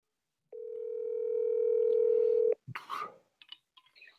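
Telephone line tone heard over a phone call: one steady tone lasting about two seconds, growing louder and then cut off abruptly, followed by a few faint clicks and scraps of sound.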